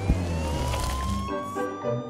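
Police siren wailing in a slow rising sweep over background music, whose low notes drop out about one and a half seconds in.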